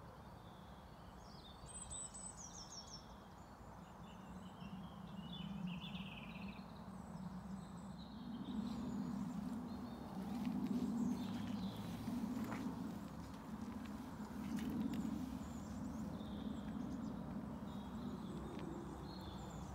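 Garden birds chirping faintly in the background. About halfway through, a louder low rumble joins in and swells and fades every second or two.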